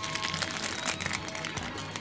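Foil booster-pack wrapper crackling and tearing as it is ripped open by hand, with faint background music underneath.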